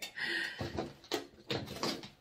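Handling sounds at a craft table: a short rustle, then four brief knocks and clicks about a third of a second apart as artificial flowers are picked up and moved about.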